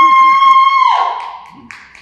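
A person's loud, long, high-pitched cheer, a "woo" held on one note that trails off about a second in. A single click follows near the end.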